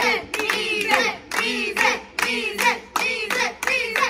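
A small group of young voices singing a chant together while clapping their hands in a steady rhythm, about three claps a second.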